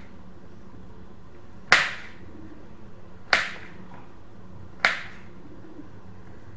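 Kitchen knife chopping through a banana onto a cutting board, three sharp knocks about a second and a half apart as the banana is cut into small rounds.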